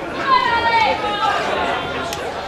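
A single raised voice shouting from the audience, a high, strained call of about a second, over the murmur of crowd chatter.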